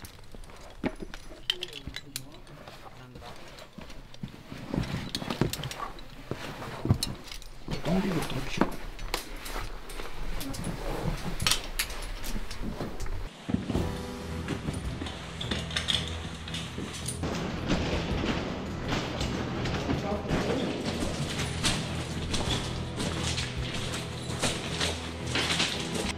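Clicks and knocks with indistinct voices, then background music with steady low notes starts about halfway through, the clicks carrying on over it.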